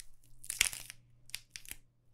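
Sound-effect crunches of flesh and bone being cut: a few short wet crackling strokes, the loudest about half a second in and two smaller ones later, as the protruding parts of a corpse are trimmed off, over a faint low hum.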